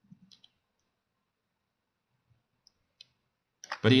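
A few faint computer mouse and keyboard clicks over a quiet room: a small cluster in the first half-second, then two single clicks about three seconds in.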